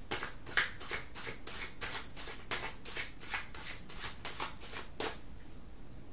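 A deck of oracle cards being shuffled by hand: a quick, even run of crisp card strokes, about five a second, stopping about five seconds in.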